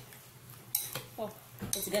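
Spoon clinking and scraping against a ceramic bowl while stirring chunks of dragon fruit in cola, with one sharp clink about three-quarters of a second in.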